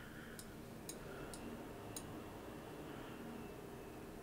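Three faint, short clicks from a computer mouse over quiet room tone.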